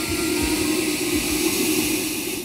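Fog machine jetting a thick blast of fog from behind a helmet prop, a loud steady hiss that fades out shortly after.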